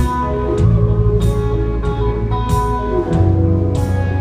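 Live country rock band playing an instrumental intro on electric and acoustic guitars, electric bass and drum kit, with a cymbal hit about every second and a quarter.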